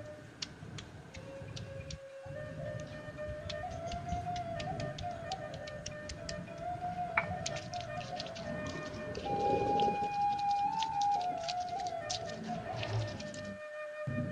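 Quiet background music carrying a single flute-like melody. Under it, irregular clicks and crunches of a stone pestle crushing shallots and garlic on a flat grinding stone.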